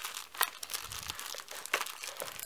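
Plastic wrapping of first-aid supplies crinkling and rustling as they are handled and pulled from a nylon pouch, with scattered sharp crackles.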